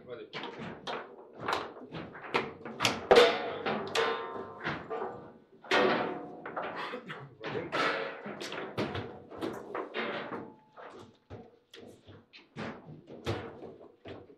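Table football match play: a fast, irregular run of hard knocks and clacks as the ball is struck by the plastic figures and bangs off the table walls, and the player rods are slammed and spun. The loudest hit comes about three seconds in.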